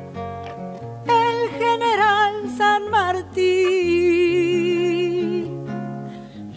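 A woman singing a Río de la Plata cielito folk melody with vibrato over a plucked classical guitar. The guitar walks a stepping bass line. Near the end she holds one long note.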